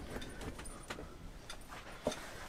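Faint, scattered light clicks and rattles of cables and small plastic items being handled in a box.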